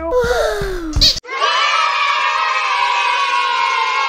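A short falling, surprised cartoon cry over music, cut off by a sharp knock about a second in, then a group of children cheering together in one long held "yay".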